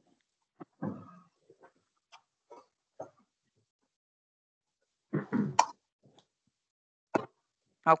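Mostly silence on a video-call line, broken by a few brief faint clicks and mouth sounds and a short burst of voice about five seconds in.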